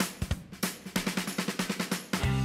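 A drum-kit fill: a quick run of snare and bass-drum strokes opening a pop song, just before the full band comes in.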